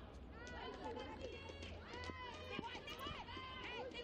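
Faint shouts and calls from footballers on the pitch: many short voices rising and falling in pitch, heard clearly because the stadium is nearly empty, over a low steady hum.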